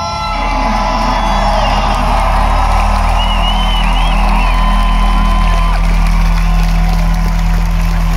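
Live rock band holding a sustained low chord, with the crowd cheering and whooping over it; a few high whoops stand out in the middle.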